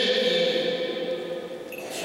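A man's voice holding one long, steady note, like a chanted or sung phrase rather than ordinary speech.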